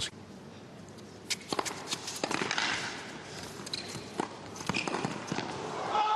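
Tennis rally on an indoor hard court: sharp racquet-on-ball strikes about once a second with the players' footfalls between them. Crowd noise swells near the end as the point finishes.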